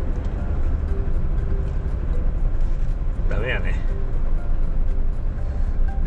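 Truck's diesel engine running with a steady low rumble, heard from inside the cab as the truck creeps along at low speed. A brief vocal sound comes about three and a half seconds in.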